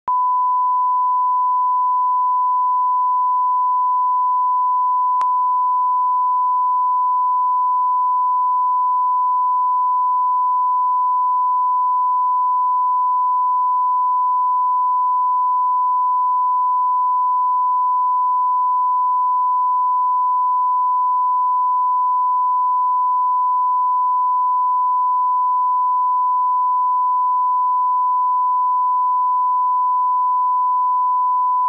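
Steady 1 kHz line-up reference tone, one unbroken pure pitch, played with colour bars ('bars and tone').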